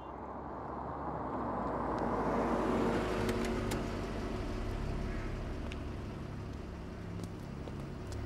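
A van's engine as it drives up and pulls to a stop. The sound swells over the first three seconds or so, then eases to a steady idle, with a few light clicks.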